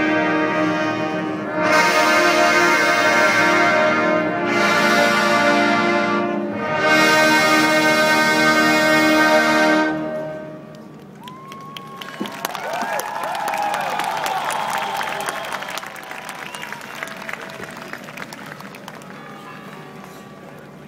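Massed military brass band playing long sustained chords in several swells, the music ending about halfway through. Then audience applause and cheering.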